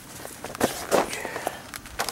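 Footsteps on plastic mulch sheeting: a few uneven steps, the loudest about a second in.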